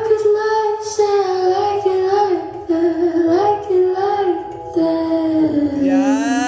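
A high singing voice holding long notes with no clear words, stepping slowly lower in pitch, over a music track.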